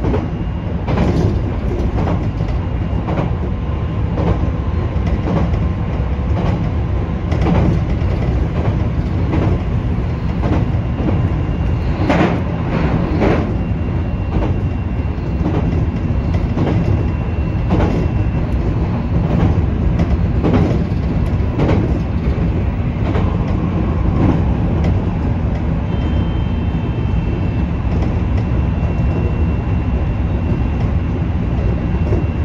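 JR Kyushu 813 series electric train running at speed: a steady rumble of wheels on rail with repeated clacks as the wheels cross rail joints, roughly once a second. A faint steady high whine sits under it in the second half.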